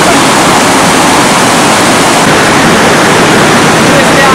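Loud, steady rush of river water pouring over a weir.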